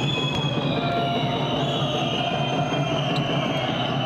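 Arena crowd whistling: several long, shrill, overlapping whistles held for a second or more at a time over a steady crowd din, with a few short sharp knocks.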